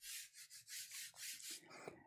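Faint rhythmic rubbing of a hand and a soft graphite pencil across drawing paper, about four strokes a second, as graphite tone is laid down and blended over the page.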